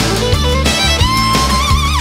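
Instrumental break of a country band song: a fiddle carries the lead, holding a long note with vibrato in the second half, over guitar, bass and a steady drum beat.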